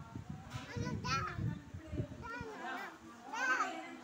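Children's voices calling out in the background, two high-pitched shouts about half a second in and again near the end, over a low rumbling noise that stops about halfway through.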